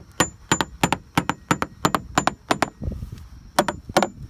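Small hammer tapping quick, sharp strokes, about three to four a second, across the fiberglass transom of a 1985 Grady-White boat, sounding the laminate for voids or rot in the core. The tapping pauses briefly about three seconds in, under a short low rumble, then starts again.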